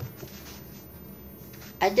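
Faint paper rustling as a coloring book is handled and opened to a two-page spread, with a soft knock at the start; a woman's voice begins near the end.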